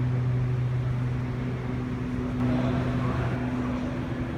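Steady low mechanical hum filling a large indoor room: a constant low drone with a fainter higher tone above it, over an even background hiss. A short patch of extra mid-pitched noise comes in a little past halfway.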